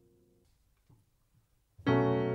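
Piano music: a held chord dies away about half a second in, a brief near-silent pause follows, then a loud new piano chord strikes suddenly near the end and rings on.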